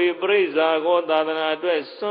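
A Buddhist monk chanting verses in a man's voice, in long held notes that rise and fall in pitch, with short breaks between phrases.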